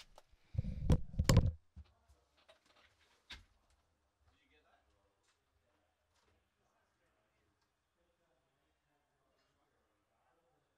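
A brief cluster of dull thumps with two sharp knocks about a second in, one more click a couple of seconds later, then near silence.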